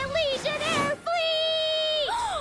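A girl's voice vocalising dramatically, its pitch swooping up and down, then holding one long, steady note from about a second in.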